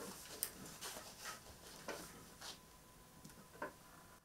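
A handful of faint, light clicks and taps of handling, spaced irregularly, as an electric guitar is settled on the lap and a hand works at the desk equipment.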